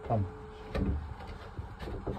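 Gloved hand rubbing over and knocking against a plastic shower waste pipe joint while it is checked for leaks, with two sharp knocks, one just before the midpoint and one near the end.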